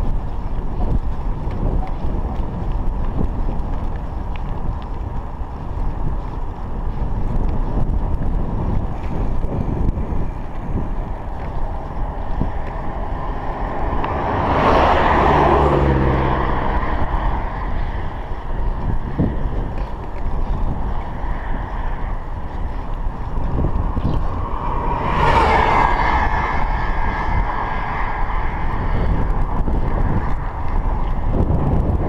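Steady wind rumble on a chest-mounted action camera's microphone while cycling along a paved road. Two motor vehicles go by, one about halfway through and one a few seconds before the end; each swells and then falls away.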